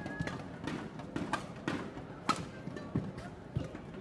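Badminton rally: sharp cracks of rackets striking the shuttlecock about once a second, with the players' footwork thudding and squeaking on the court mat.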